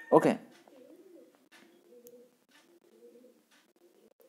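Faint cooing of a bird, a low wavering call that comes and goes for about three seconds after a brief spoken word at the start.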